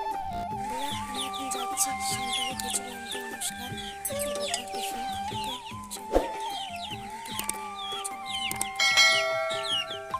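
Background music with a held melody, over chickens clucking and many short, high chirping calls. A single sharp knock about six seconds in.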